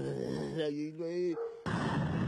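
A man's voice, then about three-quarters of the way in a sudden burst of rumbling noise from a thunderclap in the storm footage.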